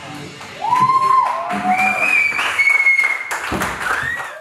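The last of a rock band's music fading out, then an audience applauding and cheering with several sliding whistles.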